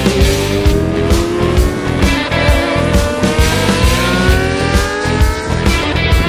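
Rock music with a steady drum beat, with a sport motorcycle's engine over it, its pitch rising steadily from about two seconds in as the bike accelerates.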